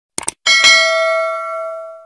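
Two quick mouse-click sound effects, then a notification-bell ding that rings for about a second and a half, fading as it goes: the sound of clicking a subscribe button's bell.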